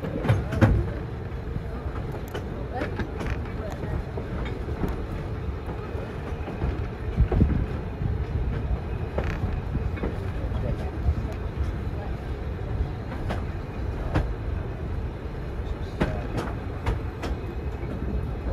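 Passenger carriage of a steam-hauled heritage train rolling along the track: a steady low rumble, with irregular clicks and knocks from the wheels on the rails. It is heard from an open carriage window.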